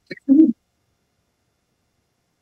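A brief, low murmur from a person's voice over the courtroom microphone, about half a second long at the very start, then complete silence.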